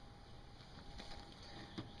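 Very quiet: faint background hiss with a few soft ticks, the kind left by hands handling the carcass.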